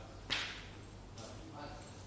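A sudden short burst of hissing noise about a third of a second in, then faint voices, over a steady low hum.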